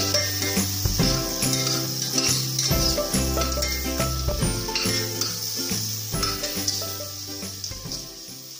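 Background music with a steady bass line, over onion and garlic sizzling in butter in a pressure cooker as they are stirred with a spoon.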